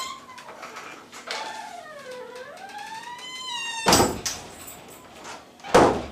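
Wooden interior door creaking open: a long hinge squeal that falls and then rises in pitch, followed by two loud thuds about two seconds apart as it is pushed open and handled.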